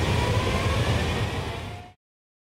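Steady outdoor rail-yard ambience: a low rumble and hiss with a faint thin whine, fading out just before the end.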